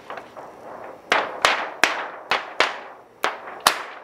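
Seven sharp snaps at uneven spacing, each dying away quickly: a printed DTF transfer film sheet being flicked and snapped by hand to shake off loose adhesive powder before curing.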